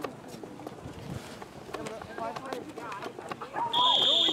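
Shouting voices of coaches and players during a youth football play, with scattered knocks. Near the end a whistle is blown in one steady blast of under a second, blowing the play dead.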